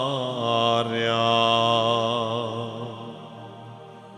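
A man singing a slow Romanian hymn, holding long notes with vibrato; a new held note begins about a second in and fades toward the end, over a steady low tone.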